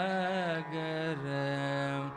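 Male Carnatic vocalist singing a held, ornamented melodic line over a steady drone, stepping down to a lower note about a second in.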